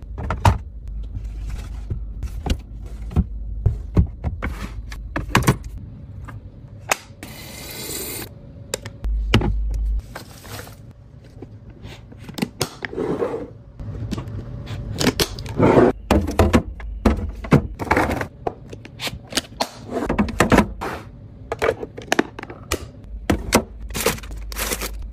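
Plastic containers, bins and food packages being set down, slid and handled while a refrigerator is stocked: a busy run of clacks, thunks and scrapes, with a brief hissing rustle about a third of the way in.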